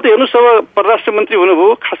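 A man speaking Nepali in a quick run of phrases, his voice narrow and thin like a telephone line.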